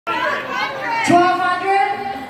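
Speech only: a woman talking into a microphone over a hall PA, drawing out one word from about a second in, with audience chatter behind.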